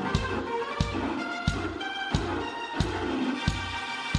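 Live band playing an instrumental passage: a keyboard solo of changing notes over a steady kick-drum beat, about three beats every two seconds.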